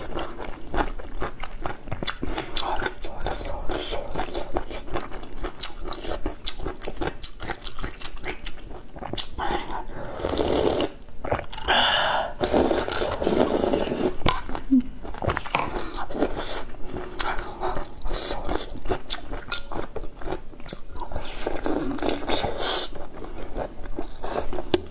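Close-miked eating: chewing and slurping spoonfuls of soft tofu in broth, with many short wet mouth clicks throughout and longer slurps around the middle and near the end.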